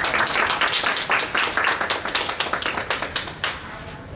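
A small audience applauding, the clapping dying away about three and a half seconds in.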